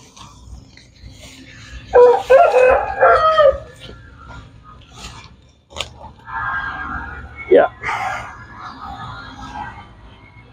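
Rooster crowing: one loud crow about two seconds in, then a longer, fainter crow from about six seconds in. A few sharp clicks come in between.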